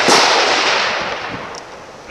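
A rifle shot right at the start, its report rolling away and fading over about two seconds.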